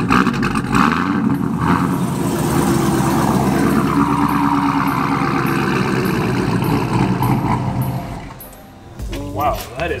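C7 Corvette's V8 engine running steadily at low speed as the car creeps forward. The sound fades out about eight seconds in.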